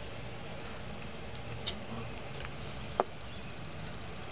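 Low, steady background hum with a few faint clicks; the sharpest click comes about three seconds in.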